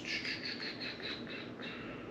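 A small bird chirping rapidly, a quick string of high notes slowly falling in pitch.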